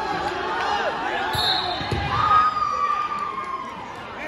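Spectators' voices and shouts overlapping in a large, echoing gymnasium, with a couple of low thuds about two seconds in. One long, held call starts a little past halfway and fades near the end.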